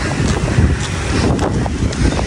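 Wind buffeting the microphone: a loud, uneven rush that swells and dips in gusts, heaviest in the low end.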